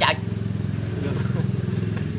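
A vehicle engine running steadily with a low, even hum, a little louder in the middle.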